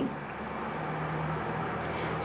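Steady low-level background noise, with a faint low hum that swells for a moment part-way through.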